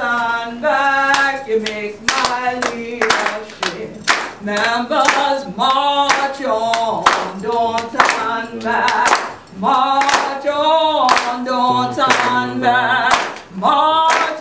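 A woman singing unaccompanied, with hands clapping along in a repeated rhythm.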